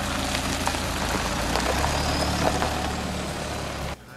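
A four-wheel-drive wagon driving past on a dirt track: steady tyre noise over a low engine hum, with scattered small clicks of gravel.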